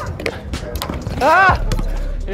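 Basketballs bouncing on an outdoor court with a few dull thuds, and a player's short rising-and-falling shout about a second in.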